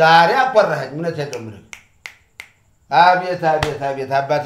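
A man talking, with a pause in the middle broken by a few short, sharp clicks, and one more sharp click under his voice near the end.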